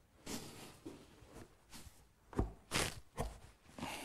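Oak rail being pressed down onto the glued tenons of a stool's legs by hand: a short rubbing of wood on wood, then a few dull knocks in the second half as the mortise-and-tenon joints seat.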